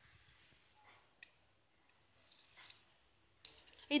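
Faint sounds of a knife cutting green bell pepper strips on a wooden cutting board: a sharp click about a second in, a short slicing sound a little past halfway, and a few light clicks near the end.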